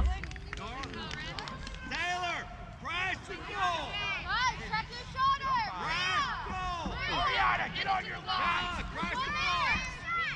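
Several high-pitched young voices shouting and calling out across the field, overlapping one another, over a low steady rumble.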